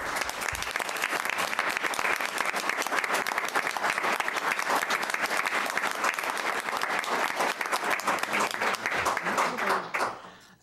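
Audience applause: a roomful of people clapping steadily, dying away near the end.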